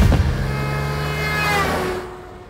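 A van speeding past close by with a long horn blast that starts suddenly and falls in pitch as it passes near the end.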